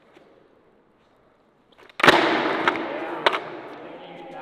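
A skateboard and rider slamming onto a concrete floor in a failed handstand trick: a sudden loud crash about two seconds in that dies away over the next two seconds, with two more sharp knocks from the board clattering.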